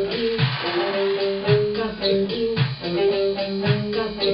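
Electronic groove played on Korg Electribe grooveboxes with Reason software: a steady drum-machine beat of low kicks and quick hi-hat ticks under a repeating melodic line of held notes, with an electric guitar.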